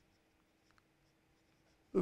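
Faint scratching of a marker pen writing on paper in a few short strokes, over a faint steady hum.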